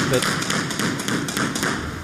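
A scatter of light, irregular taps and knocks over steady background noise.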